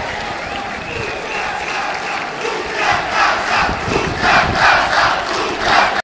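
A large crowd of marchers in the street fills the sound with a steady mass of voices. About three seconds in, a rhythmic shouted chant starts, its syllables pulsing about three times a second.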